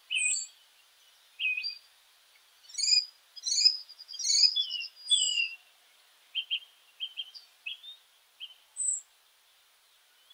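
Birds chirping and singing in short, high phrases, with a busy run of quick notes a few seconds in.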